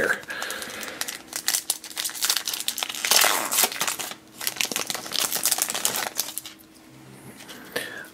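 Magic: The Gathering booster pack's foil wrapper crinkling and tearing as it is opened by hand, dying down about six and a half seconds in.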